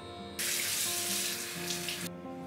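Bathroom tap running water into a sink as face cleanser is rinsed off: a steady rush that comes on suddenly about half a second in and cuts off sharply at the end.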